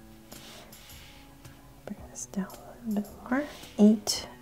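A Sharpie marker stroking on paper, then from about halfway a woman's soft, wordless voice in short rising phrases, loudest near the end.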